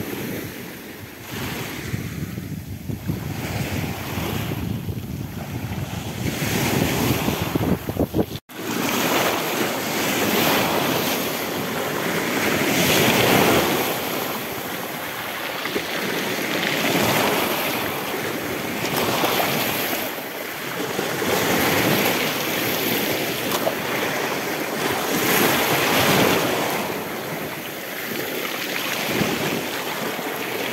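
Small sea waves breaking and washing over rocks and pebbles close by, swelling and drawing back every two to three seconds. The sound cuts out for an instant about a third of the way in, and the surf is louder after that.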